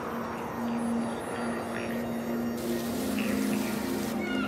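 Water from a public fountain splashing as a steady rushing hiss, which turns brighter and hissier about two and a half seconds in.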